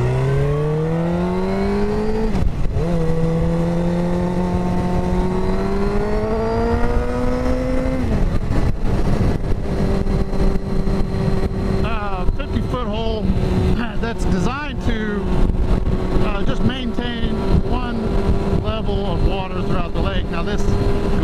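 Suzuki GSX-R sport bike's inline-four engine accelerating through the gears: the revs climb, drop at an upshift about two seconds in, climb again, then drop at another shift about eight seconds in and hold steady at cruising speed.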